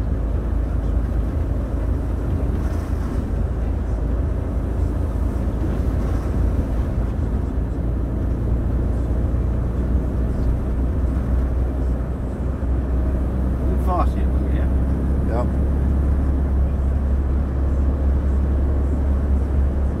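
Lorry engine and road noise heard inside the cab while driving along at a steady pace, a continuous low rumble.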